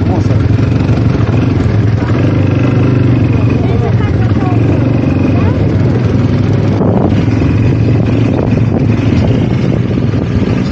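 Quad bike (ATV) engine running steadily close by, with people's voices over it.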